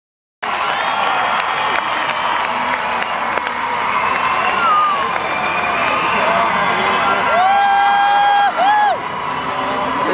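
Large concert crowd cheering, with a whistle near the middle and a long high-pitched whoop close to the microphone about seven seconds in, followed by a shorter one.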